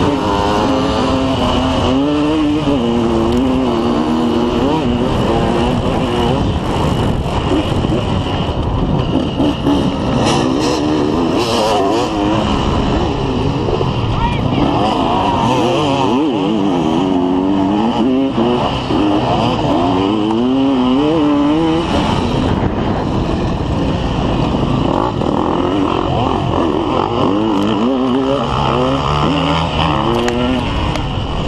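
Off-road dirt bike engine ridden hard, its revs rising and falling again and again as the rider accelerates and shifts across rough grass, with a steady rush of wind noise over it. A few sharp knocks come about ten to twelve seconds in.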